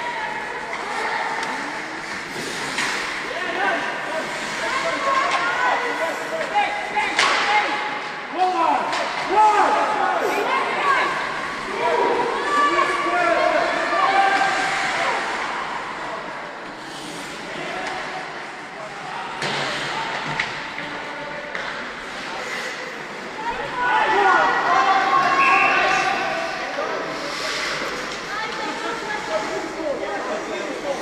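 Ice hockey game in progress: players' and spectators' voices calling and chattering over the play, with scattered sharp knocks of puck and sticks against the boards and ice. The voices are loudest around a third of the way in and again near the end.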